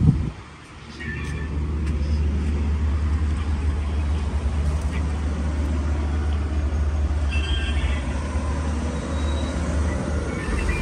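Steady low rumble of outdoor town ambience with traffic on a nearby street. A sharp click and a brief dip in level come right at the start.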